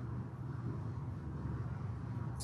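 Steady low hum of meeting-room background noise, with no speech.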